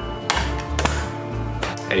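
Background music with a steady bass beat, with a few sharp clicks over it.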